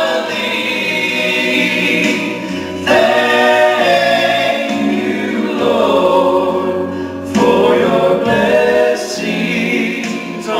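Two men singing a gospel song in harmony through microphones, in long held phrases, over a steady bass accompaniment.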